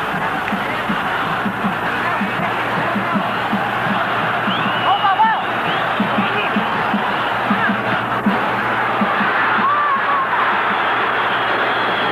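Stadium crowd noise with a steady, regular drumbeat running through it, and scattered shouts or whistles rising above.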